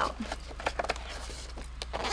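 Rustling and crinkling of a zippered project bag being rummaged through as paper pattern sheets are pulled out of it: a quick, irregular run of small clicks and scrapes.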